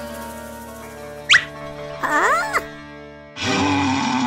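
Cartoon soundtrack music with sustained notes, with a quick falling whistle-like sound effect about a second in and a squeaky, wavering sound just after two seconds. Near the end a louder, rougher noise starts and carries on.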